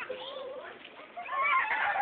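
Children's high-pitched excited squealing and shouting in a water-balloon fight, growing louder in the second half, with a faint splat of a water balloon bursting on the grass right at the start.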